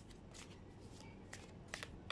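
A tarot deck being shuffled by hand: faint, soft card clicks and rustles at uneven intervals.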